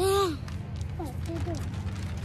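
A young child's short wordless vocal call close to the microphone, rising then falling in pitch, followed about a second later by a few softer voiced sounds, over a steady low hum.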